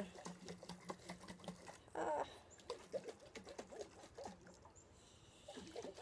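Soil-and-water slurry sloshing inside a lidded glass mason jar as it is shaken by hand, making irregular quick splashes and clicks.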